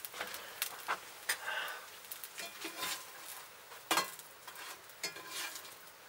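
A banana pancake sizzling in oil in a cast iron frying pan, a steady soft hiss broken by scattered light clicks and scrapes.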